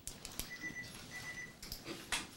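A pause in a quiet room, with a few soft clicks and two short, faint high beeps about a quarter-second apart near the middle.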